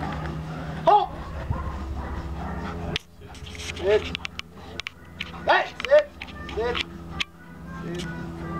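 A Doberman giving about five short, high-pitched whines, each rising and falling, over a steady low hum.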